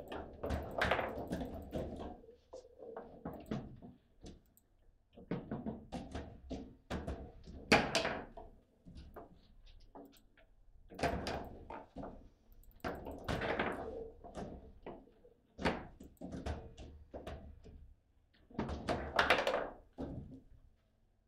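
Table football game in play: the ball cracking against the plastic players and table walls, and the rods knocking as they are slid and spun. The knocks come in an irregular run of clusters, loudest about eight seconds in and again near the end.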